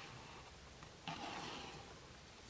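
Faint, soft scrape of a deck of cards being slid across a tabletop, starting about halfway through and fading out.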